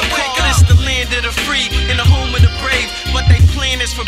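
Hip-hop track: a rap vocal over a beat with a deep, pulsing bass kick.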